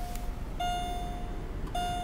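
A 2007 Pontiac G6's dashboard warning chime: a steady electronic tone held about a second at a time, broken by short gaps, repeating while the ignition is switched on.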